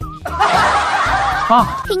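A person snickering, a breathy laugh that lasts about a second and a half.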